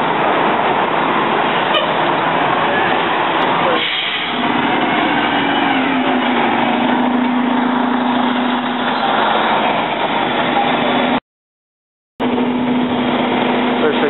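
Nova RTS city bus with a Detroit Diesel Series 50 engine pulling away from a stop and accelerating, loud diesel running amid traffic noise. From about four seconds in a steady drone holds, rising slightly once. The sound drops out for about a second near the end.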